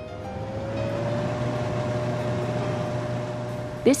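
Kitchen exhaust fan spinning up to full speed: a rising whine that levels off after about a second into a steady whir over a low hum.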